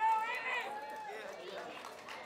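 A high-pitched voice calls out loudly in the first second, then several people talk over one another.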